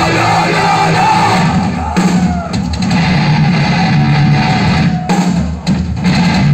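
Death metal band playing live through a club PA, heard from within the crowd: distorted electric guitars and a drum kit, loud and dense, with brief breaks in the riff about two seconds in and near the end.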